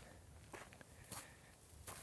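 A few faint footsteps on dry desert ground, about one step every half second.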